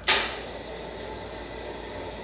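Water rushing from the fill line into a fire extinguisher cylinder, filling it for a hydrostatic test: a sudden burst at the start, then a steady rush.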